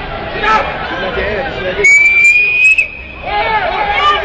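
Ringside crowd voices and shouts, broken about halfway through by one loud, shrill whistle held for about a second, its pitch rising slightly.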